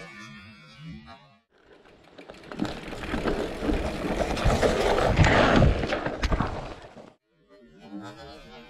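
Electric mountain bike descending a dirt forest trail, heard from the rider's camera: tyre noise on dirt and roots, knocks and rattles from the bike, and wind on the microphone. It starts about a second and a half in, grows louder towards the middle, and cuts off abruptly about seven seconds in.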